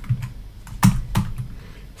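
Computer keyboard being typed on: a few irregular keystrokes, the loudest two coming a little under a second in and just after.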